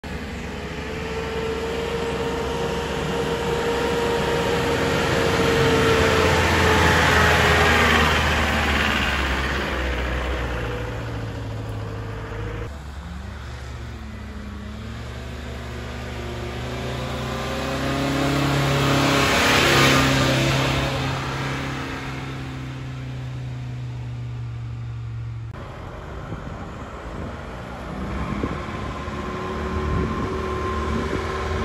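Van engines working their way up a dirt road, one vehicle after another. The first grows louder to a peak about seven seconds in. After a sudden cut, a second van pulls hard and peaks near twenty seconds. Another cut brings in a third vehicle starting its climb near the end.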